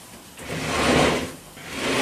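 Wooden top segments of a Skovby extending dining table sliding inward on their runners, a drawer-like rubbing slide. It comes in two long pushes: one from about half a second in lasting about a second, and another starting near the end.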